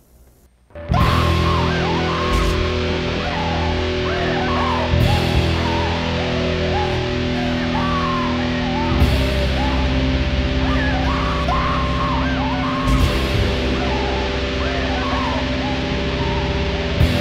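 Depressive black metal coming in under a second in: distorted electric guitars, bass and drums at a steady, dense level, with a higher wavering melody line on top.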